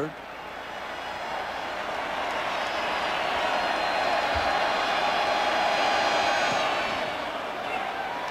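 Stadium crowd noise swelling into a cheer during a field goal attempt that goes through, peaking about six seconds in and easing off near the end.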